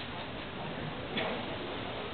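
Steady room ambience of a large indoor public space, with faint distant voices and one sharp click about a second in.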